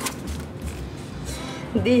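Paper rustling as a folded handwritten note is handled and opened, with a brief click at the start.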